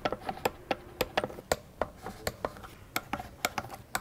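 Hand ratchet wrench clicking in a quick, uneven series of sharp ticks, about four a second, as it tightens fuel-rail bolts down to 9 Nm. The bolts are cutting their own threads into the unthreaded inserts of a plastic intake manifold.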